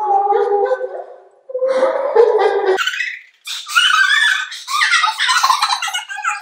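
Young women's voices: first a low, drawn-out vocal sound that cuts off suddenly about three seconds in, then high-pitched shrieks and laughter as a raw egg is broken over one girl's head.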